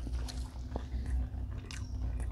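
People chewing and biting food close to the microphone, with small wet mouth clicks: naan and pieces of grilled shrimp from an Indian mixed grill being eaten. A steady low hum runs underneath.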